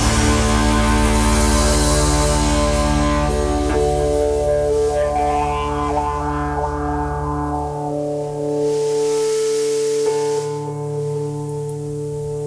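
A live rock band's final chord ringing out on electric guitar over bass and drums. The low bass notes drop away a little past halfway, leaving the held guitar tones sustaining to the end.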